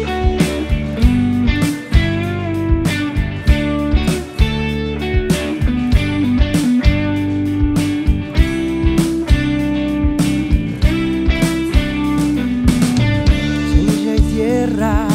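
Indie rock band playing an instrumental passage: guitars over bass, with regular drum hits.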